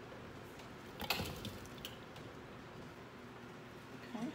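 Quiet cookware handling over a low steady hum, with a short clatter of knocks and clicks about a second in while boiled potatoes are being drained and moved to a bowl.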